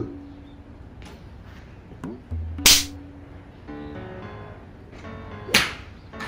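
Two swishes of a golf club swung hard through the air, about three seconds apart, over background music.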